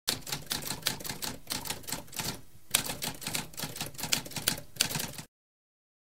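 Typewriter keys typing in a quick run of sharp clicks, with a brief pause about two and a half seconds in. The typing cuts off suddenly a little after five seconds.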